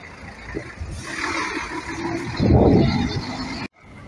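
Intercity coach driving past and pulling away: engine and tyre noise that builds, then a louder surge of low engine rumble for about a second, cutting off abruptly near the end.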